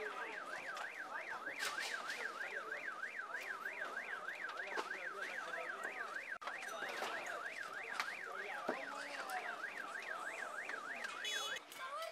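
Ambulance siren in a fast yelp, rising and falling about three times a second over background commotion; it stops just before the end.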